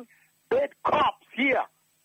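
A man's voice giving three short utterances, then breaking off about three-quarters of the way through into near silence.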